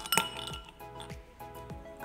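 Ice cubes tipped from a steel spoon into an empty drinking glass, clinking sharply against the glass twice near the start, over background music with a steady beat.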